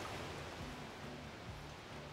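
Faint, steady rush of flowing river water.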